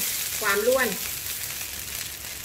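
Egg-coated rice being stir-fried in a wok: a metal spatula scrapes and tosses the grains against the pan over a steady light sizzle. The rice is fried dry and loose.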